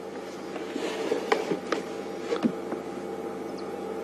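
A steady mechanical hum holding a few even tones, with a few faint clicks scattered through it.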